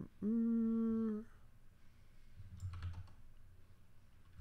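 A man humming a steady 'hmm' for about a second, its pitch rising slightly at the start, followed a second and a half later by a few faint computer keyboard clicks.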